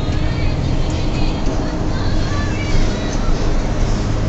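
Inside a moving bus: the steady low drone of the bus engine with road noise coming through the saloon.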